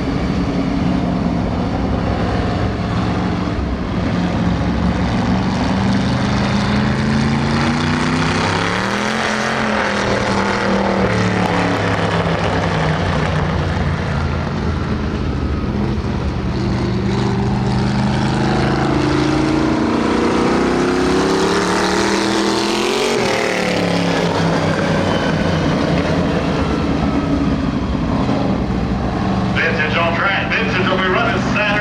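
Engine of a vintage-class dirt-track race car lapping the oval, its note falling and climbing again as it goes round, with a quick rise-and-fall in pitch as it passes close by about 23 seconds in.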